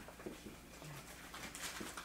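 Faint sounds of a dry-erase marker writing on a whiteboard.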